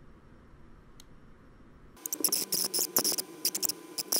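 Faint room tone with a single light click about a second in. About halfway through, a rapid, irregular run of sharp clicks or taps begins at a computer desk, several a second, and keeps going to the end.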